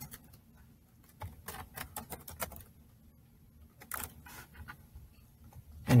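Typing on a Chromebook keyboard: a few bursts of quick key clicks with short pauses between them.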